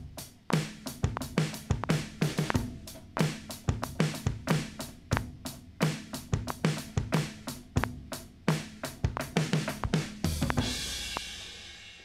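Sampled drum kit triggered from a MIDI keyboard controller, playing a simple beat of bass drum, snare and hi-hat at about three to four hits a second. Near the end a cymbal crash rings out and fades.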